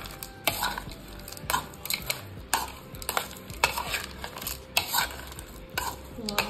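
A metal spoon stirring and tossing crushed instant noodles, cucumber and onion in a bowl. It scrapes and clinks against the bowl, with a sharper clink about once a second.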